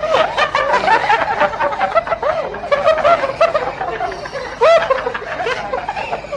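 People laughing: giggles and chuckles in many quick short bursts, with a louder outburst about two-thirds of the way through.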